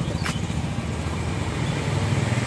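A motor vehicle engine running steadily close by, a low pulsing rumble, with a single sharp click near the start.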